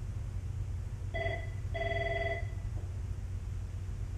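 An electronic ringing tone: two short warbling trills back to back, a little over a second in, over a steady low hum.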